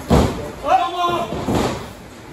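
Heavy thuds on a wrestling ring's canvas, one right at the start and another about a second and a half in, with a man's short vocal cry between them.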